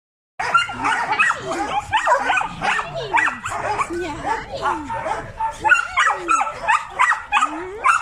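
Several dogs yapping and whining over one another without a break, a dense run of short, high yelps that swoop up and down in pitch.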